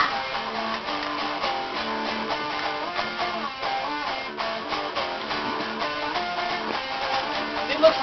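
Guitar playing a steady run of picked and strummed notes.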